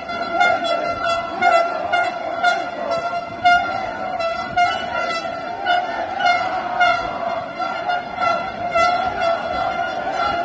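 Horns blowing held, steady tones over a marching crowd, the sound swelling about once a second.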